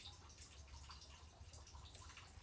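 Faint trickle of water from a reverse osmosis faucet into a plastic bucket, over a low steady hum. It is a slow flow fed straight from the membrane, with the storage tank shut off.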